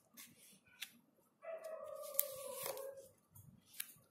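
Tarot cards being dealt onto a cloth-covered table: a few light card clicks and snaps as cards are flicked and laid down. In the middle, a steady high-pitched whine lasts about a second and a half, dipping in pitch just before it stops; it is the loudest sound.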